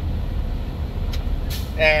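Semi-truck diesel engine idling: a steady low rumble heard from inside the cab, with a brief hiss about one and a half seconds in.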